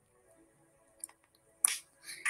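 A pause between sung lines with a faint backing track playing quietly under it. There is a small click about a second in and a short, sharp noise near the end.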